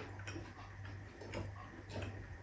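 Quiet eating sounds: a few faint, scattered clicks as bare fingers work rice on a plate, over a low steady hum.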